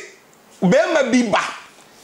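A man's voice: one short, loud, untranscribed exclamation about half a second in, after a brief pause in his talk.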